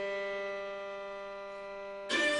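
A string ensemble of violins, viola, cello and double bass holding a soft sustained chord that slowly fades.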